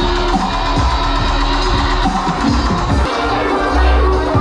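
Dubstep played loud over a club sound system, carried by a deep sub-bass line with bass notes that bend downward. The low end drops out briefly about three seconds in and comes back heavy near the end.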